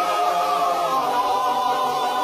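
Choral music: voices singing long held chords that shift slowly.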